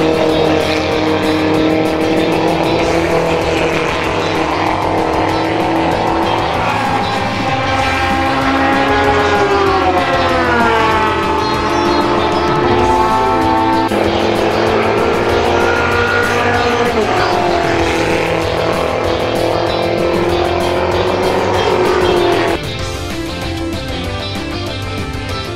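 Open-wheel formula race car engines running at speed on track, the engine note dropping sharply a couple of times and climbing again as the cars brake, shift down and accelerate, with music underneath. Near the end the car sound cuts off and music with guitar takes over.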